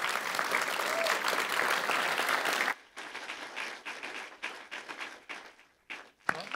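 Audience applauding. Loud and dense for the first two to three seconds, then dropping suddenly to quieter, scattered claps that thin out.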